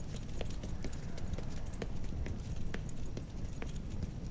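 Footsteps of several armoured guards walking away across a hard floor: irregular sharp steps with light metallic clinks from their armour and spears, over a low steady rumble.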